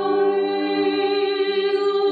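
Armenian folk song sung by a mixed choir of folk singers, holding a sustained chord of several steady notes.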